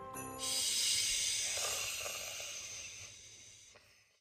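A long airy hiss standing for the toy snowman blowing cool air onto the fallen figure. It starts suddenly, then fades over about three seconds before cutting off.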